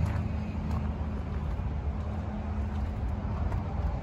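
An engine idling steadily, a low, even hum.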